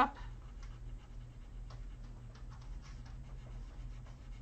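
Blue coloured pencil shading on paper with light, back-and-forth strokes, a soft irregular scratching as the pressure is eased for a lighter tone. A faint steady low hum lies underneath.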